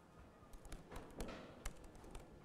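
Faint, irregular clicks of keys being typed on a computer keyboard, a few strokes a second.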